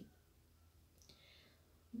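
Near silence, with one faint click about halfway through, followed by a brief faint hiss.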